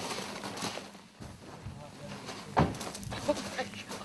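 Faint, indistinct voices of people talking at a distance, with a brief louder sound about two and a half seconds in.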